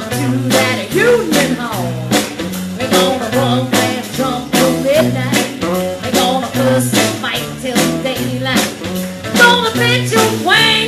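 Live electric blues band playing: electric guitars over a steadily beating drum kit and a stepping low bass line, with melody notes that bend up and down.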